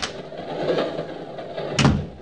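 Radio-drama sound effect of a train compartment door, shutting with a single sharp knock near the end over a low noise that swells and fades.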